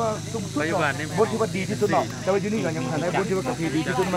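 A man speaking continuously.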